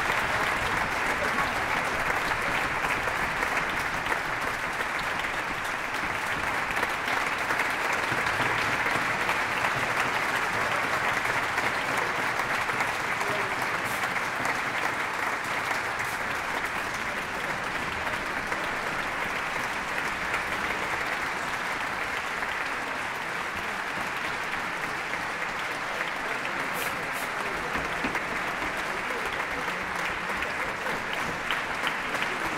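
Concert-hall audience applauding steadily throughout, a long, unbroken ovation at the end of a band performance.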